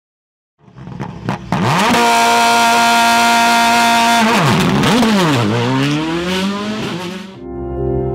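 A racing car engine revving hard: it climbs quickly to high revs and holds there for about two seconds, then drops and climbs again twice before cutting off suddenly near the end. Music starts right after it.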